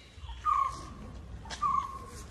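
A bird calling twice, two short clear calls about a second apart, over a low steady rumble.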